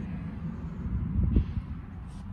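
Low, steady background rumble with a short dull bump about a second and a half in.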